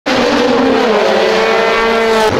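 Car engine held at high revs under hard acceleration, one loud, steady note that sags slightly in pitch about a second in and then holds.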